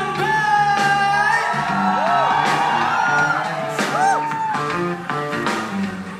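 Live band playing: drums, bass and guitar under a male singer's long held, sliding wordless notes.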